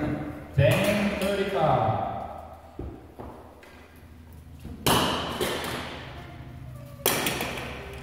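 A person's voice speaking indistinctly, then two sudden knocks about two seconds apart, each ringing out in a large room.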